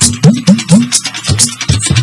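Fuji music playing without vocals for a moment: dense Yoruba percussion with talking drum strokes that bend up and down in pitch, several to the second.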